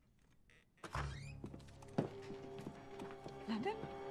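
A sudden heavy thud about a second in, followed by tense film-score music of sustained low tones. A sharp click comes about two seconds in, and there are brief voice sounds near the end.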